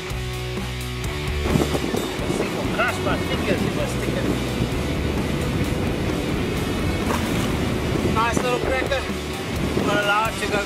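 Background music that stops about a second and a half in, giving way to the steady rush of surf and sea water churning through a rock pool, with short bursts of voices about three seconds in and again near the end.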